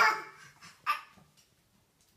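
A dog gives one loud, high-pitched bark right at the start, then a shorter, fainter sound about a second in.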